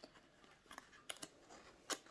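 Paperboard card stand being folded by hand: faint rustling with a few sharp creasing clicks, the loudest just before the end.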